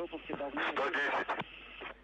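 Radio voice traffic from the Soyuz launch loop: a man speaking briefly over a narrow, muffled radio channel, with bursts of hiss in the middle.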